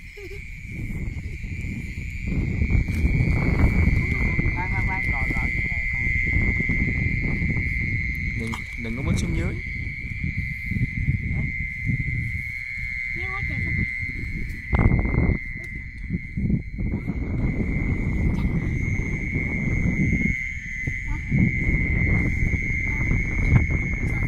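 A steady, high-pitched night chorus of frogs and insects. Under it runs a heavy low rumble of the microphone being handled and carried while wading.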